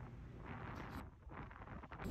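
Faint wind noise on the microphone over the rush of ocean surf breaking against lava rock.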